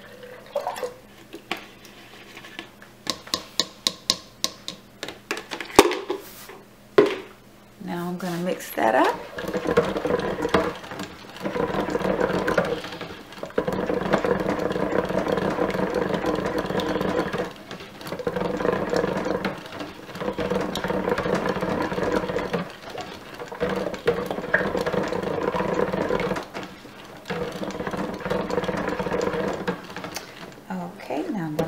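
Immersion stick blender running in bursts of about four to five seconds with brief pauses, its motor humming and churning as it mixes raw cold-process soap batter in a stainless steel pot. Before it starts, about eight seconds of quieter liquid pouring and a run of light clicks and taps.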